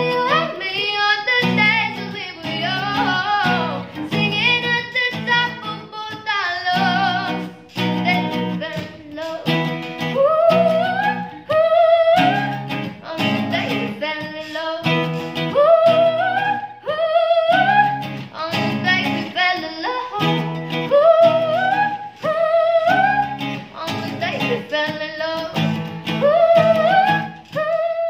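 A young woman singing, phrase after phrase, over strummed acoustic guitar chords.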